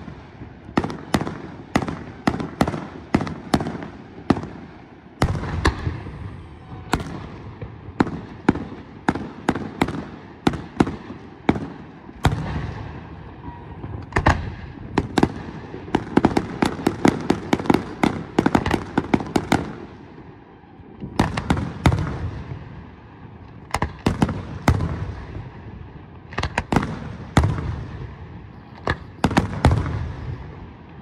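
Professional aerial fireworks display: a continuous series of sharp shell bursts and bangs, with dense volleys of quick reports in the middle and again in the latter part.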